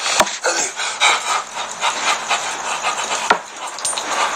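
A man laughing hard without words, in breathless, panting bursts, with a couple of sharp knocks.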